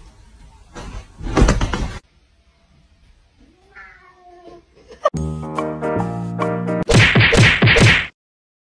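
A domestic cat gives one short, drawn-out meow, a 'mrraouuu' that bends up and down in pitch, about halfway through. Before it comes a loud noisy burst of about a second, and from about five seconds in there is music with held notes, loudest and roughest near the end.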